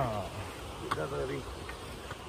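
A man's voice in brief fragments: a falling vocal sound at the start and a short utterance about a second in, over a steady low rumble of outdoor noise.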